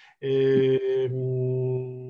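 A man's long hesitation sound, a steady "yyy" held at an even pitch for about two seconds.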